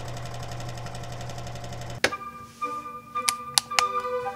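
Sewing machine running steadily at speed for about two seconds as it stitches fabric, then cutting off suddenly. Background music with sustained notes follows, with three sharp clicks near the end.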